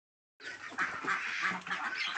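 A flock of white ducks quacking, many short calls overlapping into a continuous chatter that starts about half a second in.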